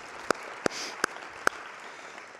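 Audience applauding, with loud single hand claps close to the microphone at about two and a half a second over the crowd's clapping. The close claps stop about one and a half seconds in and the applause thins out.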